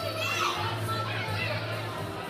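Young children's high voices calling and squealing as they play, over faint background music with a steady low bass.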